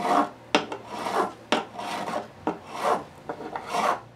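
Fret file stroked over a classical guitar's frets to recrown them after levelling: rasping strokes about once a second, with a sharp click between some strokes.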